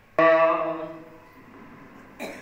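A single held musical note from devotional kirtan starts suddenly and fades away within about a second, leaving faint room sound.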